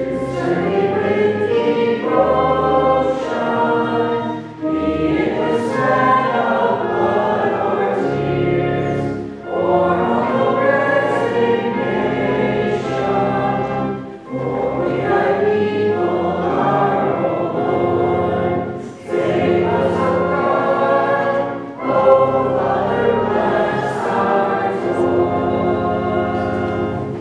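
Hymn sung by a choir, in lines a few seconds long with short pauses between them.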